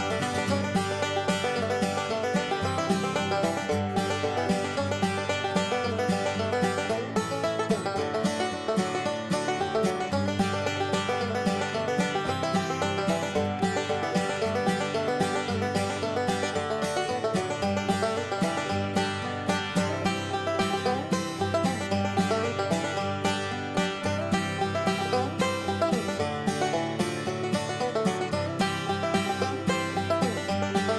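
Background music with fast, busy plucked-string picking at a steady level throughout.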